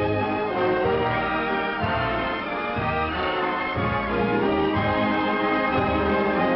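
Orchestral music: held chords over a bass line that moves about once a second.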